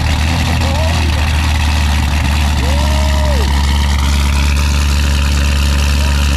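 Supercharged 6.2-litre LT5 V8 of a C7 Corvette ZR1 at a steady high idle just after a cold start.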